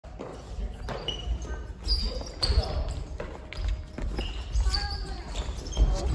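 Athletic shoes squeaking on a wooden gym floor, with thuds of footfalls and sharp racket hits on the shuttle during a badminton rally.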